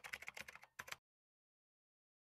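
Faint typing sound effect: a quick run of about ten keyboard-like clicks in the first second, then dead silence.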